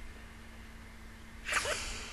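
Quiet room tone with a faint steady hum, then about one and a half seconds in a woman's breathy, upset 'my', the start of 'oh my god'.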